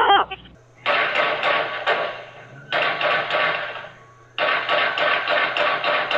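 Rapid gunfire in three bursts of many shots in quick succession, starting about a second in, with echo between the shots. It is heard through a surveillance camera's microphone, which sounds thin and cuts off the highs.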